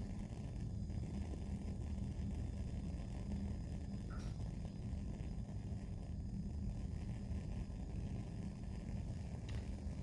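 Lit Bunsen burner flame burning with a steady low rumble while a wire inoculating loop is held in it for flame sterilization.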